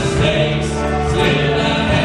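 Adult church choir singing a gospel song, with men singing lead into microphones.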